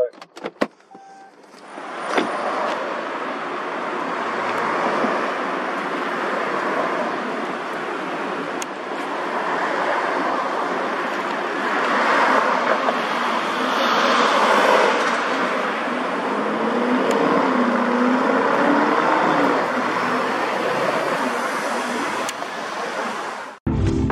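Steady street traffic and road noise from passing cars, with no distinct engine note standing out. Electronic music with a beat cuts in just before the end.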